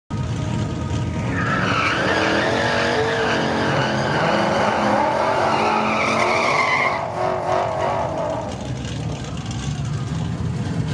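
Ford Mustang 5.0 GT's V8 held at high revs in a burnout, the tyres squealing from about a second in until about seven seconds, when the squeal stops and the engine drops back to a lower, rougher running.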